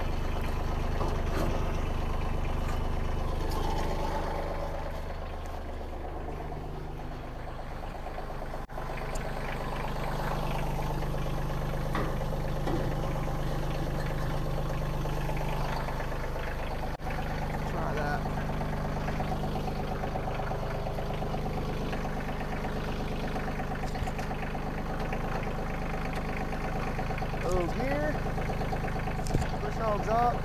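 Kioti CK2610 compact tractor's three-cylinder diesel engine idling steadily, its note shifting a few seconds in.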